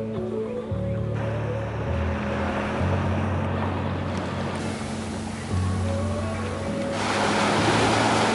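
Background music with a slow, changing bass line over the wash of surf breaking on a sandy beach; the surf grows louder near the end.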